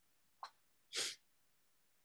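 Two short breath noises from a person close to a microphone: a small one, then a louder hissing burst about half a second later.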